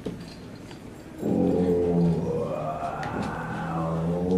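Quiet room noise, then about a second in a long, droning, howl-like pitched tone starts abruptly on stage and holds, swelling and wavering in pitch: the start of a piece of live music.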